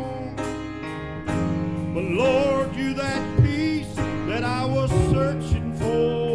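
Live gospel band music: electric guitars over a steady beat, with a voice singing long, wavering, sliding notes that come in about two seconds in.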